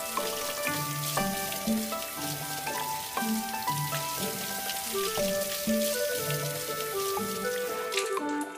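Tap water running and splashing onto tied cloth as it is handled and squeezed in a concrete sink. Background music plays over it.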